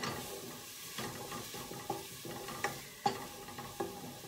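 Onions and garlic sizzling as they sauté in a pot, stirred with a wooden spoon. A few light knocks of the spoon against the pot sound through the steady sizzle.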